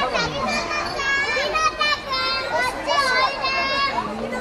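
Young children talking and calling out in high voices, one over another.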